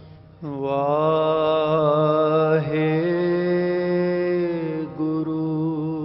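A man's voice singing one long held note of a Punjabi devotional poem, entering about half a second in and stepping up in pitch partway through, over a steady low drone.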